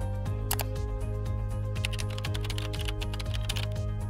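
Computer keyboard typing, irregular key clicks as a password is entered, over steady background music.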